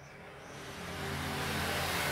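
A motor vehicle nearby, its steady engine hum and rushing noise growing gradually louder as it draws closer.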